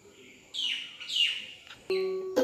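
A bird calls twice, each call a short falling chirp under half a second long. Just before the end a violin string is plucked and rings on a steady note.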